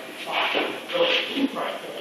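A man speaking in short, halting phrases with brief pauses between them.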